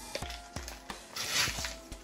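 A photocard package being opened by hand: a few light taps, then a rustle of wrapper about a second and a half in, over soft background music.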